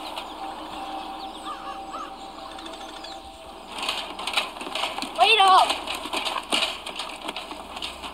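Footsteps on wooden jetty boards in the second half, over quiet lakeside ambience. A short voice-like call sounds about five seconds in.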